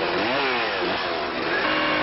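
Chainsaw revving up and down twice, its pitch rising and falling, then running at a steady speed.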